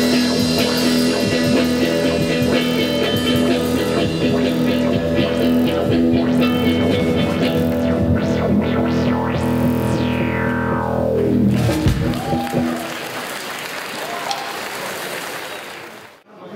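Rock band playing, with electric guitar, bass guitar and drum kit. About ten seconds in, a note slides steeply down in pitch and the music stops. A quieter, even noise follows and fades out near the end.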